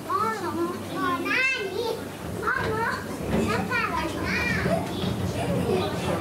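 Children's voices calling out and chattering, high and rising and falling in pitch, over the murmur of other people talking.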